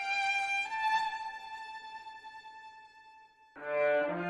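Solo violin playing a slow melody: two notes stepping upward, then a long held note that fades away. Just before the end a loud, deep chord comes in.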